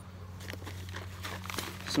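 Faint crinkling and rustling of something being handled, over a steady low background hum.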